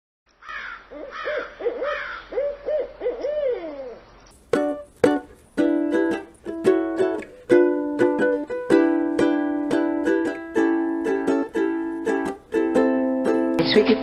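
An owl hooting a string of short rising-and-falling hoots, about seven in the first four seconds. Then plucked, strummed string music starts about four and a half seconds in.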